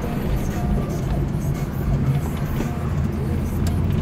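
Steady low engine and road hum inside the cabin of a moving Chevrolet Camaro.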